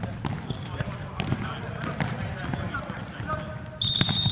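A soccer ball being kicked and bouncing on a hardwood gym floor, with sneakers squeaking and players calling out in a large echoing hall. A long, steady high-pitched tone begins near the end.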